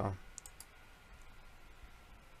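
A spoken word trails off, then two or three faint clicks come about half a second in, over quiet room tone.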